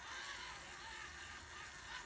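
Faint sound of a small battery-powered facial cleansing brush running against the skin, its motor weak from low batteries, which the user suspects.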